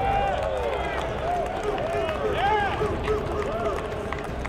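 Several men's voices shouting and calling out across an outdoor football practice field, over a steady low rumble.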